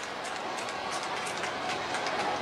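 Steady crowd noise from a packed football stadium, an even wash of many voices with no single sound standing out.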